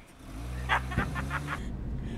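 Car engine running as the sedan drives off, its pitch climbing slightly. About a second in there is a quick run of short sharp pulses.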